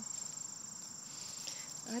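Insect chorus, such as crickets: a steady high-pitched trill that runs on without a break.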